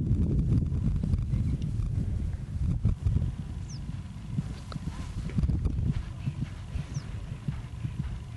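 Hoofbeats of a Connemara stallion cantering across grass, loudest in the first few seconds and then softer.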